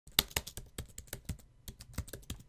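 Computer keyboard typing: a run of quick, uneven keystroke clicks, about six a second, as a web address is typed out letter by letter.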